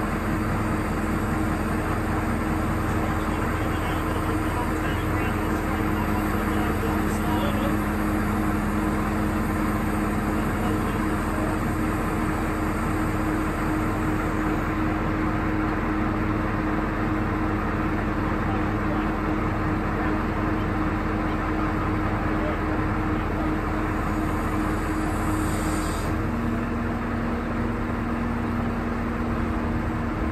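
Mobile crane's diesel engine running steadily while it lifts a boat, a constant hum whose pitch steps up slightly near the end.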